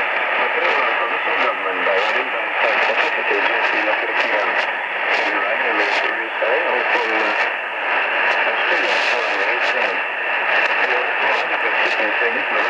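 Distant shortwave AM broadcast from SIBC, the Solomon Islands Broadcasting Corporation, on 5020 kHz, heard through a Sangean ATS-909X receiver's speaker. A voice is talking, weak and hard to make out under heavy static hiss, with a thin steady tone behind it.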